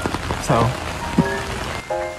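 Heavy rain falling, a steady hiss heard from under an umbrella. Background music comes in near the end.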